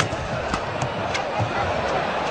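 Badminton rackets striking the shuttlecock in a fast doubles rally, a sharp hit about every half second, over steady arena crowd noise.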